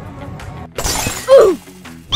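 Background music with a beat, then about three quarters of a second in an edited-in comic sound effect: a sudden loud crash-like burst with a falling tone at its peak.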